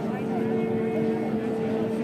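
Crowd of people talking at once, with a long, steady held tone over the chatter that begins just after the start and fades near the end.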